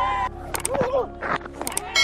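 A brief snatch of a man's voice, with two groups of sharp clicks, about half a second in and near the end, over a steady low hum.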